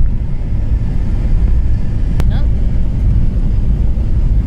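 Steady low road and engine rumble of a car cruising at highway speed, heard from inside the cabin. A single sharp click comes about two seconds in.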